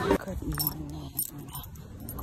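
Light metallic jingling in a few brief clinks, over a faint muffled voice.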